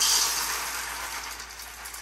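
Dry small pasta shells pouring from a cardboard box into a measuring cup, a continuous rattling hiss that starts suddenly, loudest at first and slowly fading.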